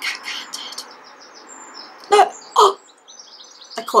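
A bird chirping in short, high, repeated trills, with two louder, lower cries a little over two seconds in.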